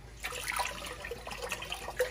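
Vegetable broth poured from a carton into a large pot, a steady splashing pour that starts a moment in.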